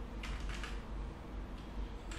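Computer keyboard being typed on: a few short keystrokes in the first second and a couple more near the end.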